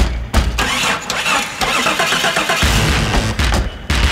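Techno beat built from a Jeep's own sounds. An engine cranking-and-starting sound fills the first half, and a heavy, pulsing bass beat comes in about two and a half seconds in.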